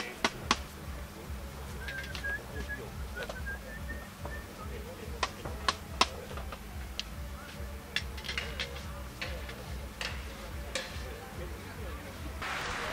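Faint background voices over a low steady rumble, with scattered sharp clicks and knocks, the loudest near the start and about six seconds in.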